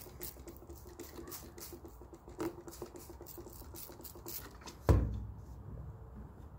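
Hand-pumped trigger spray bottle squirting in quick short hisses, about three a second, onto a sawdust-covered foam block. A single louder thump about five seconds in.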